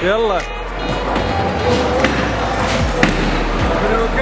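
Music over the noise of a busy bowling alley: voices and a few sharp knocks from balls and pins on the lanes.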